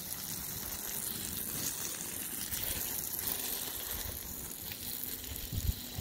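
Garden hose jet spraying water onto soil and plants: a steady hiss and splatter.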